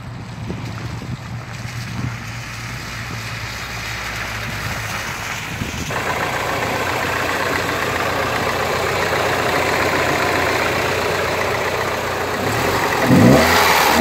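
A MINI's four-cylinder petrol engine idling steadily with the bonnet open. Near the end it is revved in quick blips, its pitch rising and falling.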